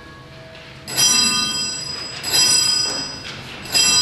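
A small bell rung three times, about a second and a half apart, each ring bright and high and dying away slowly, signalling the start of Mass.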